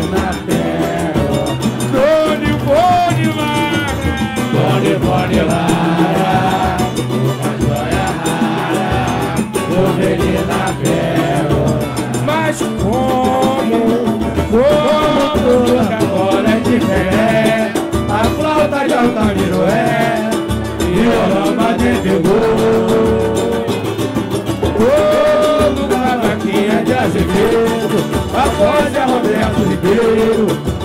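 Live samba de roda: a singer at a microphone and a crowd singing along over cavaquinhos, guitar and hand percussion, with a steady samba beat.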